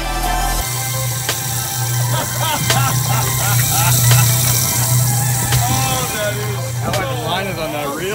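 Background music cuts off about half a second in, giving way to the boat's own sound: a steady low motor hum over wind and water hiss, with scattered voices.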